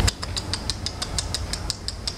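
A quick run of kissing smacks on a cheek close to the microphone: a dozen or so small, sharp lip clicks, about six or seven a second.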